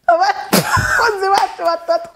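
A woman's voice talking animatedly, with a single sharp slap about half a second in.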